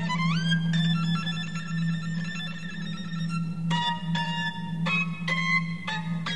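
Contemporary chamber-concerto music for solo violin and small ensemble: a rising glide into held high notes, then several sudden struck notes that ring on from about halfway through, over a steady low hum.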